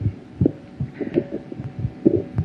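Several soft, low thumps at irregular intervals over a faint steady hum.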